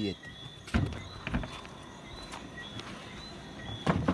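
A few knocks and handling bumps from a plywood amplifier panel being fitted into a vehicle's hatch, the loudest near the end, over crickets chirping steadily.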